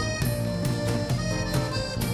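Live folk band playing an instrumental passage without vocals: guitar and drums, with a melody of long held notes over them.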